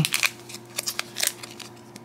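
Sealed plastic packets of instant bubble tea being handled: a scatter of light crinkles and clicks.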